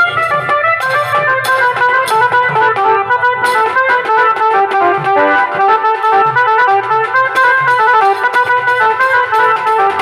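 Wedding band music: an electronic Casio keyboard playing a fast, stepping melody over dhol drums beaten by hand and with sticks.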